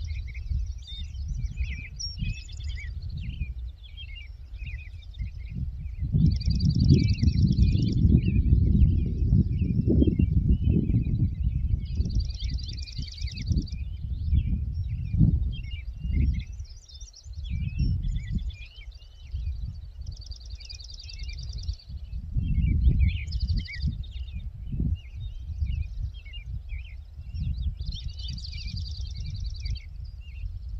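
Several songbirds singing, one repeating a short trill every few seconds among scattered chirps, over a gusting low rumble of wind on the microphone that is strongest about a third of the way in.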